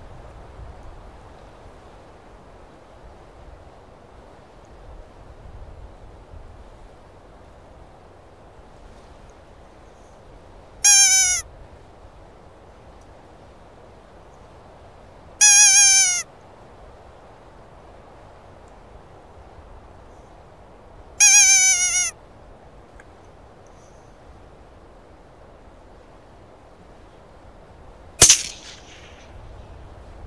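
Three loud, high, wavering calls, each under a second and about five seconds apart, then a single rifle shot with a short echo near the end: the shot that kills the fox.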